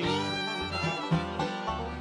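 Bluegrass band playing a short instrumental fill with no singing: fiddle, mandolin, acoustic guitar and upright bass, the bass notes on a steady beat about twice a second.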